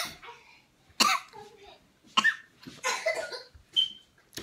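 A person coughing in short, sharp bursts, about five times at roughly one a second, from the burn of spicy chili-and-lime Takis in the throat.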